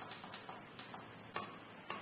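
Faint clicks of fingers pressing buttons on an automatic weighing-and-filling machine's control panel, a few light ticks a second with two sharper clicks in the second half.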